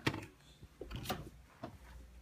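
A few faint footsteps and knocks on a concrete shop floor over low room noise, with one sharper click at the start.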